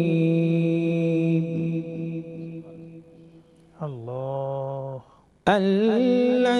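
Male qari reciting the Quran in the melodic, drawn-out tarteel style. He holds a long note that fades away over about three seconds, then sings a short held phrase, and a loud new phrase begins about half a second before the end.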